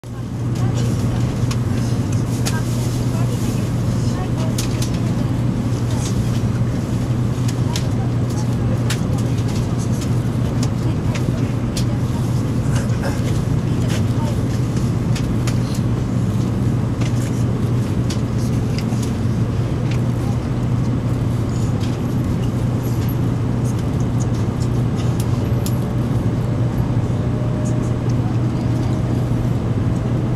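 Inside a Shinkansen bullet train carriage as it pulls out along the platform: a steady low hum with scattered light clicks, and a faint rising whine near the end as the train gathers speed.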